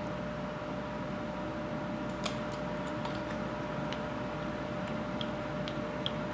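Small whittling knife cutting and scraping inside a carved wooden cage, a few faint clicks, over a steady background hum with a faint constant whine.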